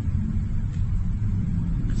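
A steady low rumble of background noise, with no speech over it.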